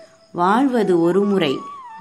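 A narrator's voice speaking in Tamil: one drawn-out phrase, its pitch rising and falling, after a brief pause.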